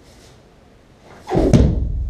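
A person thrown in aikido and landing on the training mat in a breakfall: one loud thud about a second and a half in, followed by a low boom that fades over the next second.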